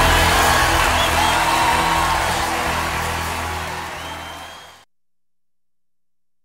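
Recorded gospel band music at the end of a song, its final chord held over a haze of cymbal wash and fading steadily. It cuts to dead silence nearly five seconds in.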